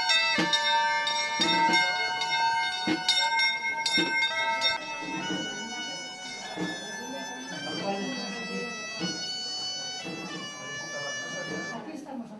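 Instrumental music: a melody of long, bright held notes over a steady drone that stops about five seconds in, with a few sharp knocks early on.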